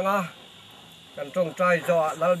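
Steady high insect chirring runs under a man's speaking voice. The voice breaks off for about a second in the middle, leaving the insects alone.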